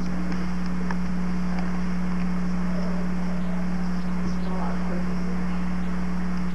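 A steady low electrical hum on an old home-video recording, with faint, indistinct voices of people murmuring behind it.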